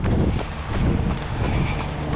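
Wind buffeting the microphone of a handheld action camera carried by a runner, a fluctuating low rumble.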